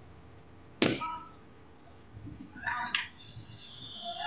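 A ball striking a cricket bat with one sharp crack about a second in. A little under three seconds in, a player gives a short high-pitched shout.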